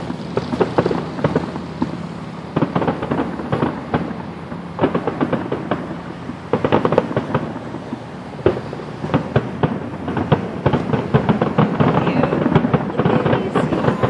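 Aerial fireworks shells bursting in the sky: many bangs and crackles in quick succession, growing denser and louder in the second half.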